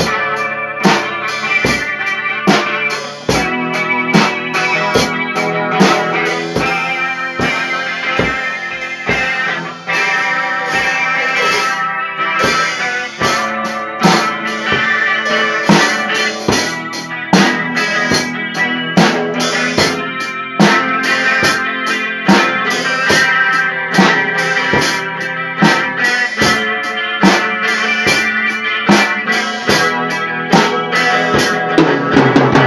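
Instrumental music played on a drum kit and guitar, the drums keeping a steady beat under sustained guitar notes.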